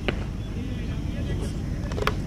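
A sharp crack about a tenth of a second in, a cricket bat striking a ball, over a steady low rumble.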